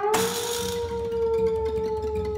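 Contemporary chamber-ensemble music: a single instrumental note that has just slid upward is held steady, sinking very slightly in pitch. A brief hissing noise burst comes just after the start.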